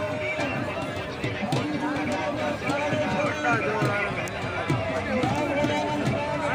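People's voices over music with long held notes, in a busy outdoor crowd.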